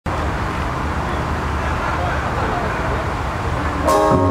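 Steady outdoor traffic rumble mixed with indistinct talk from people nearby. Right at the end a jazz band's horns come in together: trumpet, trombone and saxophones.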